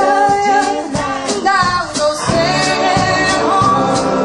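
Live band music with a woman singing lead over acoustic guitar, electric guitar and drums. The band fills in more fully a little past halfway.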